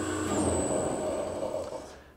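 Electric load motors and a variable frequency drive winding down after being switched off: a steady whirring that fades away over about two seconds. A low hum cuts out about half a second in, and a thin high whine dies away near the end.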